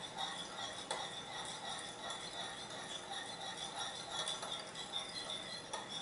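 Metal spoon stirring sauce in a small ceramic bowl to dissolve sugar: faint soft scraping with a few light clinks against the bowl.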